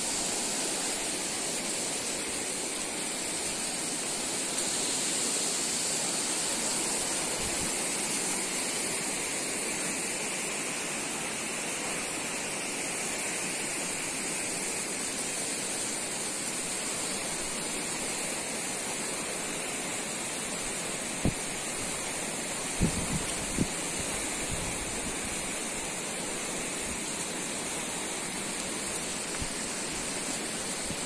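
Steady rushing of a stream of water flowing over rocks, with a few dull knocks a little over twenty seconds in.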